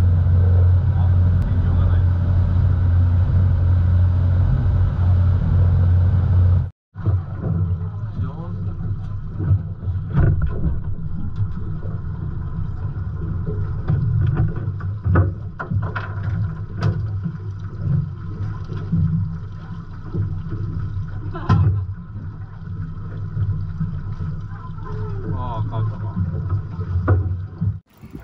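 Fishing boat's engine running under way, a loud steady low drone. It is cut off abruptly about seven seconds in, giving way to a quieter low hum with scattered knocks and clatter on deck.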